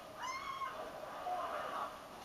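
A single short, high-pitched, meow-like cry about a quarter second in, lasting about half a second and rising then falling in pitch.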